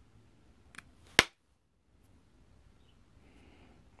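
A flake popping off the edge of a stone drill bit under a pressure flaker's tip: one sharp crack about a second in, just after a fainter tick.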